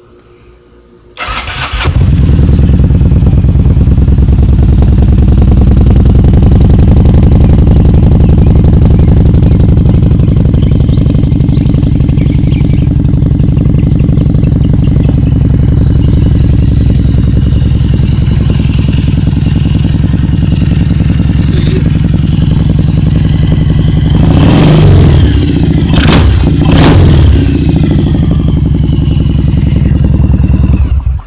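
Kawasaki Vulcan 1700 Vaquero's 1,700 cc V-twin started about a second in, catching quickly and settling into a steady idle. Near the end it is revved a few times in quick blips, rising and falling in pitch.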